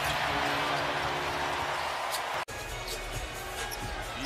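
Arena crowd noise with sustained music notes over the PA. The sound cuts off abruptly about two and a half seconds in, then comes back as court sound with faint basketball bounces under the crowd.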